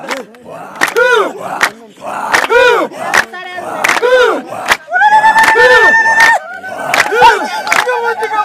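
Voices shouting in short, repeated cries, each rising and then falling in pitch, with sharp clicks between them and one long held cry about five seconds in.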